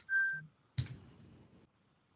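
A short, steady electronic beep, then a sharp click followed by a brief hiss that cuts off abruptly, leaving near silence.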